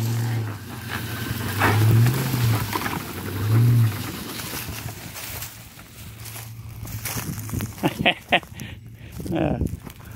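Pickup truck engine pulling a BMW E30 out of a field on a tow strap: a low drone that swells three times in the first four seconds as it takes the load, then settles to a steady idle. A voice calls out briefly twice near the end.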